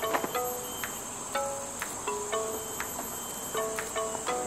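Steady high-pitched drone of rainforest insects, with a few short, soft musical notes sounding about once a second.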